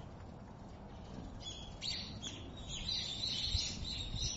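Birds chirping, starting about a second and a half in, over low background noise.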